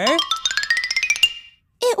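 Toy xylophone played in a fast rising run of struck notes, each a little higher than the last, lasting about a second and a half: a glissando leading into a flashback. The end of a child's spoken word is heard at the very start.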